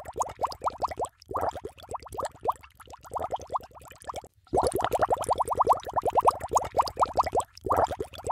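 Cartoon underwater bubbling sound effect: fast trains of short rising bubble plops, many a second. They come in several runs with brief breaks and get louder about halfway through.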